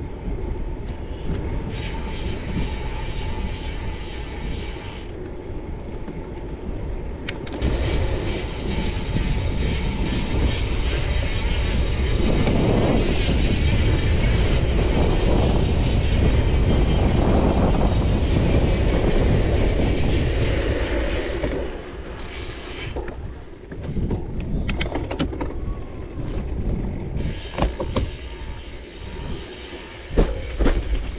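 Wind rushing over the microphone and tyres rolling as a gravel bike rides along a forest path, the rumble swelling in the middle. Near the end it turns to scattered knocks and rattles as the bike rolls onto rough dirt.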